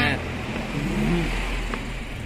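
Street ambience: a steady low rumble of road traffic, with a short low hum from a woman's voice about a second in.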